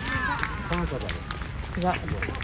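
Indistinct voices of spectators by the pitch: short calls or remarks just before a second in and again near the end, over a steady outdoor background.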